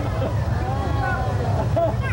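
Steady low rumble of a tour tram running, with passengers talking over it.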